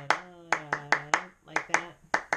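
Hand claps tapping out a syncopated rhythm, with a woman's voice chanting rhythm syllables like 'bum ba da' along with the claps. The claps fall at uneven spacing, in the pattern of the piece's rhythm.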